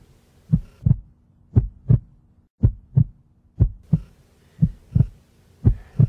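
Heartbeat sound effect: paired low thumps, a lub-dub about once a second, over a faint steady hum.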